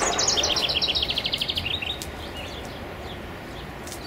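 A songbird singing a fast trill of repeated high notes that fall steadily in pitch, lasting about two seconds, followed by faint outdoor background.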